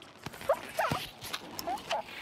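Animated cartoon bird character making a few short, rising squeaky vocal sounds, with several light clicks or taps in between.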